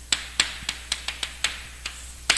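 Chalk striking and writing on a chalkboard: a quick, irregular series of sharp taps, about seven in two seconds, as characters are written stroke by stroke.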